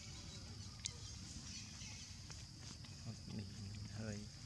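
A monkey giving a few short low calls near the end, over a steady high-pitched buzz, with a single sharp click about a second in.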